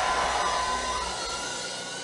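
Steady hiss-like noise of a large church hall, slowly fading, with faint held notes of soft background music.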